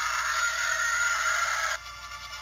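Cartoon sound effect for a crashing TIE fighter: a harsh hiss with a faint wavering tone in it, lasting nearly two seconds and cutting off suddenly, from a handheld console's small speaker.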